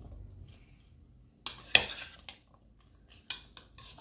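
Metal spoon stirring sliced cucumbers in dressing in a plastic mixing bowl, with a few scattered clinks of the spoon against the bowl, the sharpest about a second and a half in.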